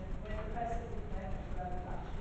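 A person speaking, heard faintly through the chamber microphones over a low, uneven rumble.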